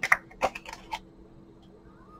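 Tarot cards being handled and drawn from a deck: a handful of short card clicks and snaps in the first second.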